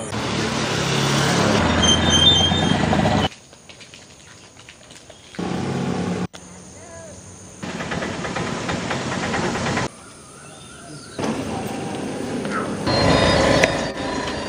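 Outdoor ambience of several short clips spliced together: background voices and vehicle noise, changing abruptly in level every one to three seconds at each cut.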